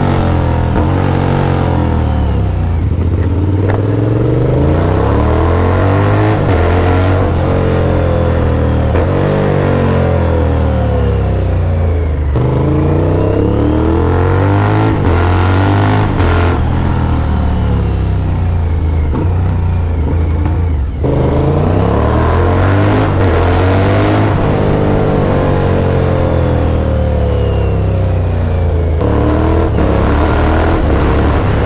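The inline-four engine of a 2006 Yamaha FZ1, fitted with a slip-on exhaust, heard while riding. Its pitch climbs and falls again and again as the rider accelerates, shifts and rolls off the throttle.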